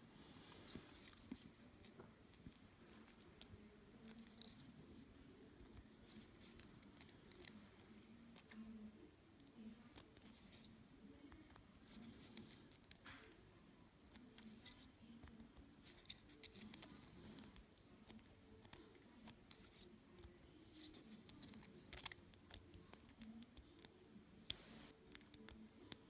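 Faint, scattered small clicks and scrapes of a combination computer lock's number wheels being turned and probed with a thin metal pick, feeling for the gate on each wheel.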